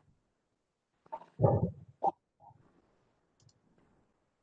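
A short low thump about a second and a half in, with a few sharp clicks around it, picked up by a microphone on a video call.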